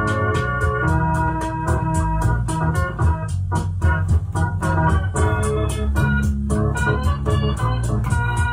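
Live improvised electronic jam: sustained organ-toned keyboard chords over a heavy bass line, with a fast, steady ticking pulse running throughout.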